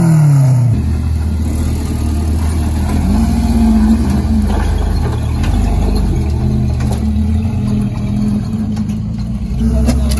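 Off-road vehicle engines running under load while crawling up a steep dirt hill. The revving rises and falls in the first second, then settles into a steady drone whose pitch steps up about three seconds in.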